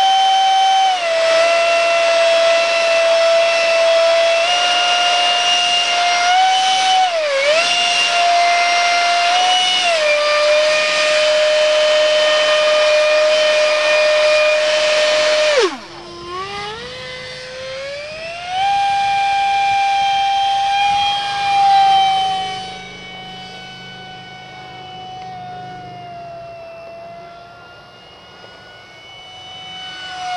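Electric motor and propeller of an RC park jet running at a high-pitched whine, its pitch stepping up and down with the throttle while the model is held by hand. About halfway through the sound drops off suddenly, then climbs and holds as the plane is hand-launched, and fades over the last several seconds as it flies away.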